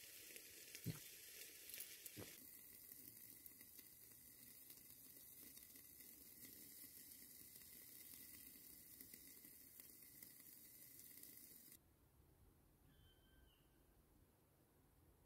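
Faint, steady sizzling from a covered pot set on glowing coals in a vegetable-steamer fire pan. There are a couple of soft clicks in the first two seconds. The sound drops away sharply about two seconds before the end.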